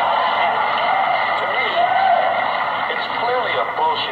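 Recorded stand-up comedy played back through a loudspeaker: a male comedian's voice, thin and boxy, with the top end cut off.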